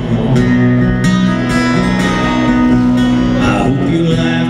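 Two acoustic guitars playing an instrumental break in a country song, with strummed chords ringing.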